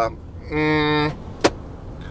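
Low steady engine and road rumble inside a Mercedes Sprinter van's cab while driving. A man's short, flat, held hum comes about half a second in, and a single sharp click follows about a second and a half in.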